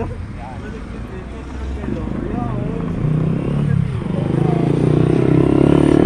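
A motorcycle engine approaching, growing steadily louder over the last few seconds and loudest near the end, over a steady low rumble of street traffic.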